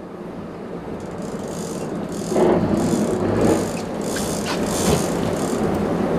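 Big-game lever-drag reel, an 80-wide Shimano Tiagra two-speed, rattling and clicking under the load of a large tuna on the line. The sound grows louder about two seconds in, with short bursts of clicks roughly twice a second.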